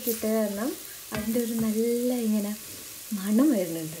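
Sliced onions and ground spices sizzling as they fry in a cast-iron pot, stirred with a wooden spoon, with a couple of sharp knocks of the spoon on the pot. Over it, louder, a voice holds long, gliding sung notes without words.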